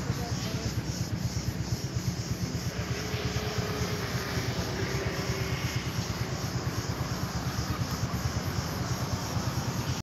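A low engine rumble running steadily with a fast, even pulse.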